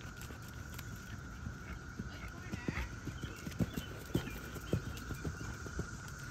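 Hoofbeats of a horse being ridden at a trot on a sand arena: dull thuds about twice a second, plainer in the second half.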